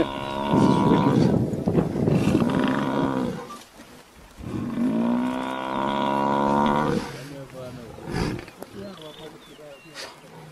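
African buffalo bellowing in distress under a lion attack: two long, loud drawn-out calls with a short break between them, followed by fainter animal noise.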